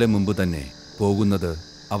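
A man speaking Malayalam in short phrases over a steady, high chirring of crickets in the background.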